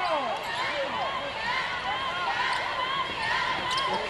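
Basketball game sounds: sneakers squeaking on a hardwood court in many short, overlapping squeaks that rise and fall in pitch, with a ball bouncing.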